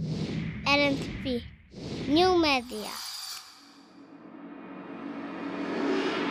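Sound of an animated logo sting. There are two short warbling, electronically processed voice-like phrases in the first three seconds, a brief high fizz, then a swell that rises towards the end.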